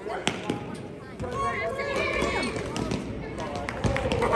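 Basketball being dribbled on an indoor gym court, with sharp bounces heard over the voices of players and spectators.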